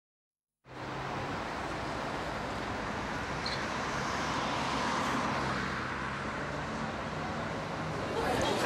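Street traffic ambience: a steady wash of road noise with a low engine hum, starting a moment in after a brief silence.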